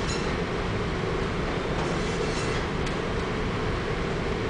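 Steady rumbling noise of a ship underway, with a low drone and a hiss over it and faint higher scraping near the start and around the middle.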